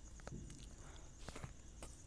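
Faint, scattered light clicks and taps of thin copper winding wire being worked by hand around the slots of a small tower fan motor stator during rewinding.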